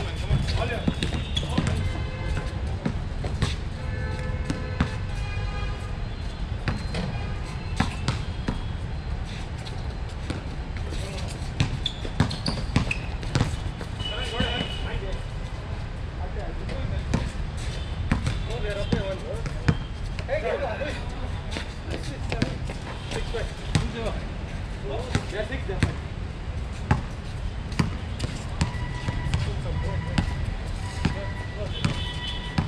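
A basketball being dribbled and bouncing on an outdoor hard court during a pickup game, repeated sharp bounces throughout, with players' indistinct voices and a steady low rumble underneath.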